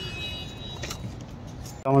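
Steady outdoor background noise with a couple of faint clicks near the middle; a man starts speaking just before the end.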